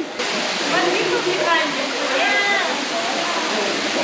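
Steady rush of water from a stream and small waterfalls in a rock canyon.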